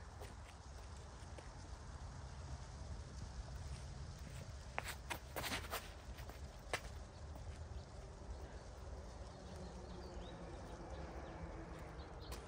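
Steady wind rumble on the microphone, with a few quick footfalls and shoe scuffs on a concrete tee pad about five seconds in as a disc golfer runs up and throws a disc, and one more scuff a second later.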